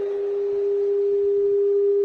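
A single steady, nearly pure tone held at one pitch, fading out just after the end.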